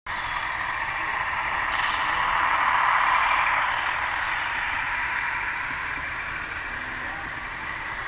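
Model train rolling past close by: a steady whir of the locomotive and its wheels on the rails, swelling to its loudest about three seconds in as the locomotive goes by, then easing as the loaded hopper cars follow.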